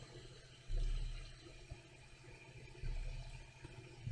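Quiet room tone with two faint low rumbles, one about a second in and another near the end.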